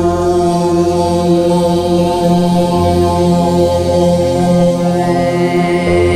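Overtone singing: low voices hold a steady drone while single high overtones above it swell and fade in turn, giving a chant-like, meditative sound.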